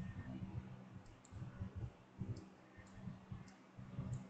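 A handful of faint, irregular computer mouse clicks over a low, steady hum.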